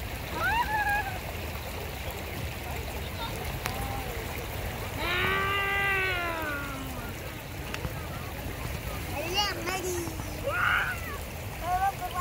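Steady rush of flowing stream water, with a child's voice calling out several times over it, including one long drawn-out call in the middle.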